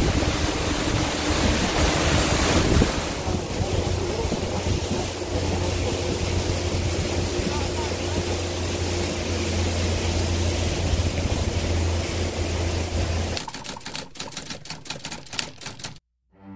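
A motorboat's engine runs with a steady low hum under a loud rush of wind and water as the boat travels. About thirteen seconds in this gives way to a quieter, rapid run of sharp clicks like a typewriter.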